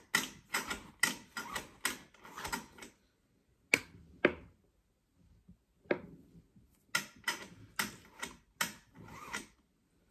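A run of light, irregular clicks and taps, several a second, broken by a pause of about two seconds in the middle.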